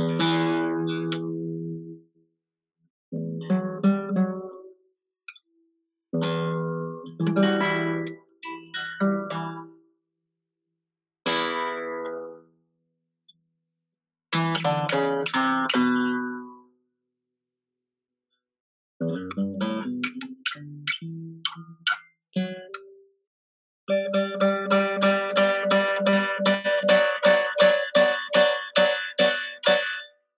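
Acoustic guitar played through a video call, in short phrases broken by silent gaps. From about three-quarters of the way in it settles into quick, even strumming of about three to four strokes a second.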